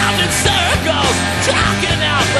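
Loud, steady garage punk rock recording from 1988, with electric guitar.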